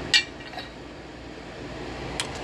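A single sharp metallic clink just after the start, a steel valve knocking against the cast-iron cylinder head as it is handled, over a steady low room hum.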